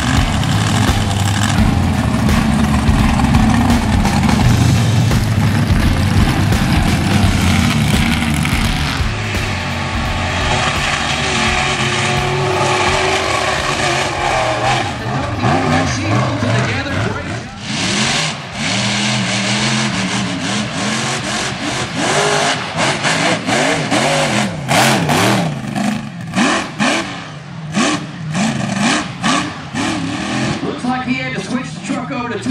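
Mega mud truck engines at high revs running a dirt race course: a heavy, steady roar at first, then the engine note repeatedly rising and falling as the trucks rev and lift off.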